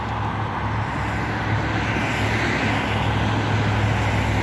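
Steady road-traffic noise from cars passing on a busy street, swelling a little as a vehicle goes by about halfway through.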